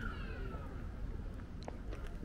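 A drawn-out high-pitched animal cry that glides down in pitch and fades out within the first second, over a steady low background rumble, with a few faint clicks near the end.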